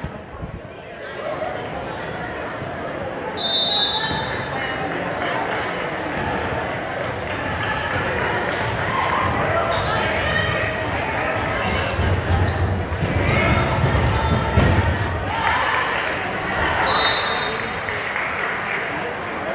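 Basketball game in a gym: spectators talking and a basketball dribbling on the hardwood floor, with a referee's whistle blown about three and a half seconds in and again near the end.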